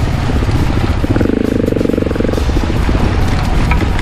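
Off-road motorcycle engine running on a rough trail, rising under throttle for about a second and a half partway through, with a heavy low rumble of wind and jolts on the helmet-mounted microphone.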